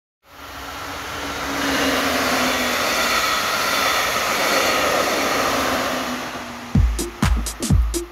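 Passenger train passing by, a steady rushing noise that fades in and holds for several seconds. Near the end, electronic dance music with a deep thumping kick drum starts, about two beats a second.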